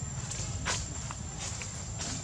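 A few soft, short scuffs and clicks over a steady low rumble and a thin, high, steady whine.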